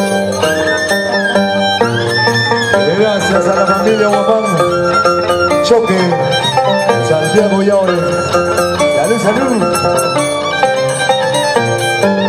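Andean violin and harp playing a scissors-dance (danza de tijeras) tune, the violin's melody sliding and wavering over plucked harp notes. Sharp metallic clinks from the dancer's steel scissors cut through the music.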